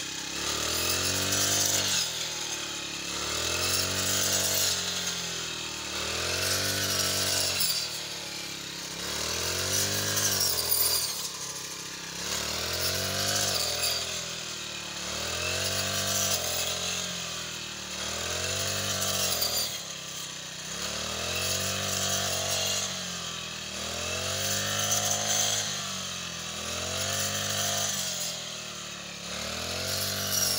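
Small petrol engine of a shoulder-slung brush cutter running with a metal blade through standing wheat. Its pitch rises and falls about every two seconds as the blade swings back and forth through the stalks.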